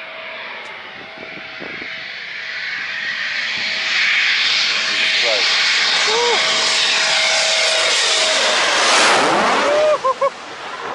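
Military fighter jet on final approach to the runway, its engine noise growing steadily louder as it comes in low, with a steady whine tone running through it, reaching its loudest as it nears overhead towards the end.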